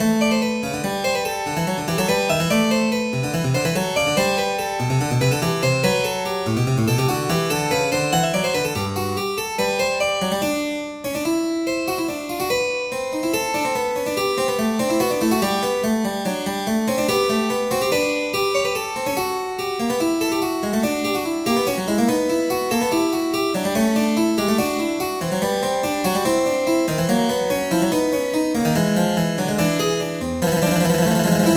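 Keyboard music with a harpsichord sound: several lines of quick notes played together, with a brief dip in level about eleven seconds in.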